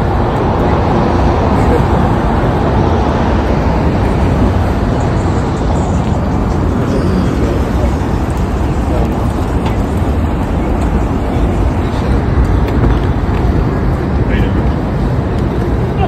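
Steady outdoor street noise, passing traffic and wind rumbling on the microphone, heavy in the low end.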